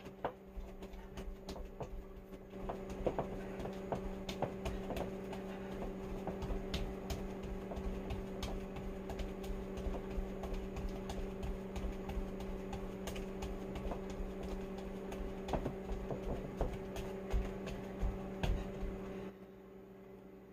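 Microwave oven running with a steady hum, over scattered light clicks and low thumps of someone moving about; the hum cuts off suddenly near the end.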